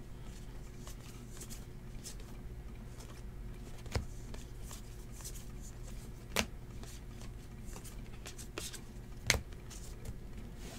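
Baseball trading cards flipped through one by one by hand, with light sliding and ticking of card stock and three sharp card clicks about four, six and nine seconds in, over a low steady hum.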